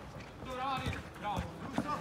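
Men's voices shouting and calling out around a five-a-side football pitch, with a couple of sharp knocks in between.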